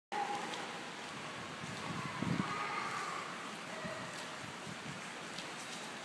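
Steady outdoor breeze noise, with a few soft low thumps about two seconds in.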